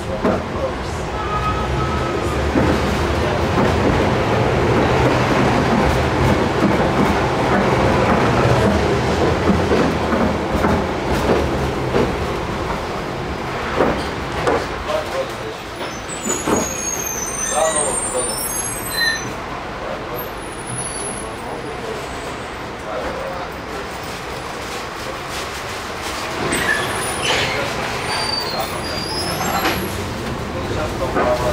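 Tram running along its rails, with loud rolling and motor noise for the first dozen seconds that then eases as it slows toward a stop. A few sharp clicks and a brief high squeal come a little past the middle.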